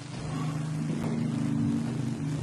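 Low sustained tones, several sounding together, held steadily and shifting to new pitches a few times.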